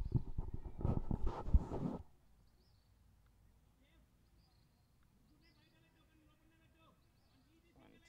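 Rumbling, crackling noise on the microphone for about two seconds. It then drops to a quiet outdoor background with a few faint distant calls and chirps.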